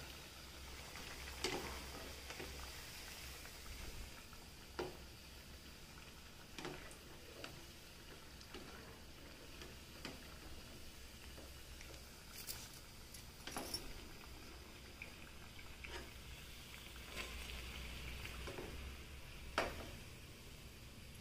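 Fried dal vadas being set down one by one on a paper towel over a plastic plate: faint, scattered soft taps and paper rustles at irregular times over a low background hiss, the loudest just before the end.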